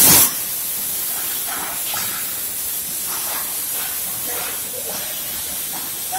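Oxy-fuel gas cutting torch hissing steadily as its flame cuts through a rusted nut on a railway brake part, louder for a brief moment at the start.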